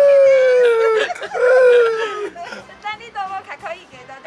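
A person's long, drawn-out excited shout, its pitch slowly falling, then a second shorter falling cry about a second later. Short broken bits of voice follow near the end.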